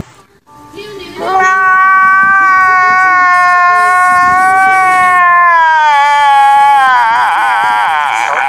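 A man crying: one long high wail that starts about a second in and slowly falls in pitch, then breaks into a wavering, shaking sob near the end.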